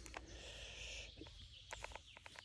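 Faint outdoor sounds: a soft high rustle for under a second early on, then a few light clicks near the end.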